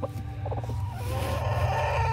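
Hen sitting on eggs in a nest box, making a drawn-out, wavering call from about a second in, as a hand reaches under her for her eggs.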